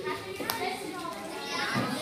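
Children's voices talking and chattering, with one sharp click about half a second in.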